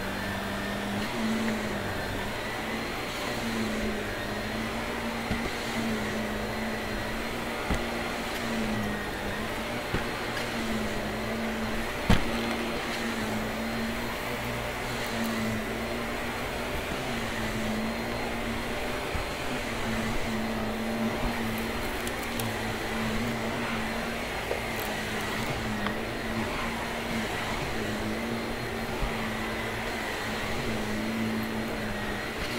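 Shark upright vacuum cleaner running steadily on a carpet mat, its motor hum wavering up and down in pitch as it is pushed back and forth. A few sharp clicks come through, the loudest about twelve seconds in.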